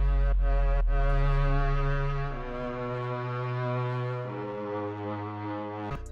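Sampled cello from an orchestral library playing long sustained notes, volume-automated to sound more like a real player, with reverb. It starts on a deep, loud note, then moves to quieter higher notes about two seconds in and again about four seconds in.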